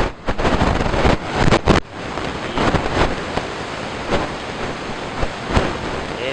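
Loud rough rushing noise, with gusty bursts and sharp knocks in the first two seconds, then steadier. It is the kind of noise that wind or handling on a phone microphone makes.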